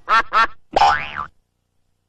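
Cartoon boing sound effects from the Klasky Csupo logo: two quick rising boings, then a longer wobbling boing that sweeps up and down. The sound cuts off about a second and a half in.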